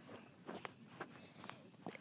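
Faint, scattered light taps and clicks of small toy cars and plastic playset pieces being handled, over quiet room tone.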